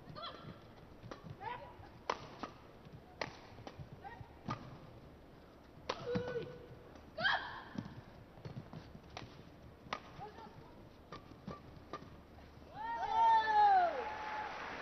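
A badminton doubles rally: sharp racket strikes on a feather shuttlecock roughly every second, with shoe squeaks on the court floor between them. Near the end comes a louder burst of squeaking as the point finishes.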